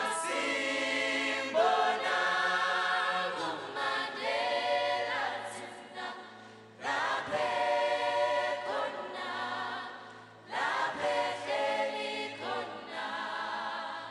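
A choir singing in harmony in long held chords. The phrases break off briefly about seven and eleven seconds in.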